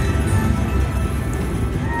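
Buffalo video slot machine playing its free-game music and reel-spin sounds, dense and steady, with a ringing tone coming in near the end as a win is tallied.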